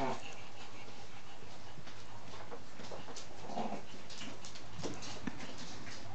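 Shih Tzu puppy whimpering in short calls, once at the start and again about halfway through, with scattered light clicks between.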